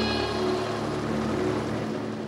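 Military attack helicopters flying in formation, their rotors and turbine engines making a steady, even noise.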